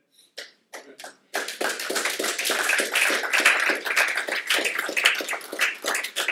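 Audience applauding: a few scattered claps, then many people clapping together for several seconds, thinning out near the end.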